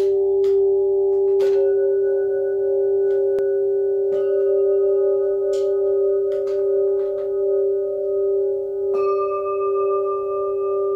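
Burmese whirling gong (kyi), a flat scalloped metal plaque, struck softly with a padded mallet and left to ring: a long, steady bell-like tone with several overtones. It is struck again about a second and a half in, about four seconds in and about nine seconds in, each strike adding higher notes to the ringing.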